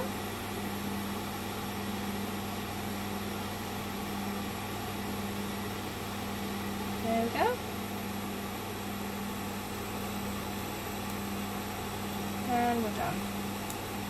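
Steady hiss of a small handheld gas torch flame heating a crucible of silver, over the constant hum of a small benchtop fume extractor fan. A brief vocal sound comes about seven seconds in and again near the end.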